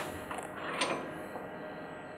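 Faint handling of a steel U-lock in the grips of a tensile test machine, with a small click a little under a second in, over a steady faint machine hum.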